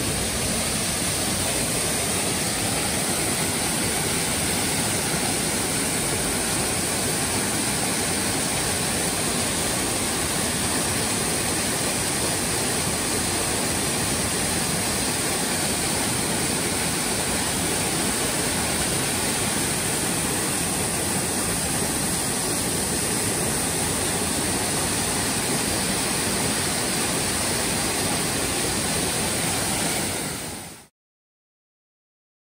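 Waterfall cascading over rock ledges into a pool: a steady rush of falling water.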